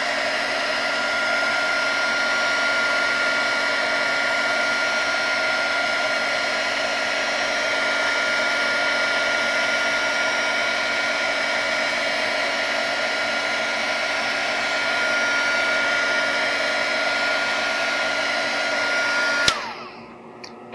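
Handheld heat gun running steadily, a rush of blown air with a steady whine from its fan, warming a copper-clad board. The whine rises as the fan spins up at the start, then falls away as the gun is switched off just before the end.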